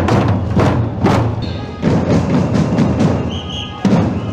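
A marching drum group beating many frame drums and larger hand-held drums together, with loud unison strikes a little over half a second apart and the drums ringing between them.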